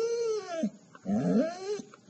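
A dog whining in two drawn-out calls, each rising and then falling in pitch, the second starting about a second in. It is excited by a rabbit outside the window.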